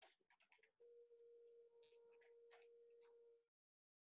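Near silence: a few faint clicks, then a faint steady electronic tone for about three seconds that cuts off abruptly into dead silence.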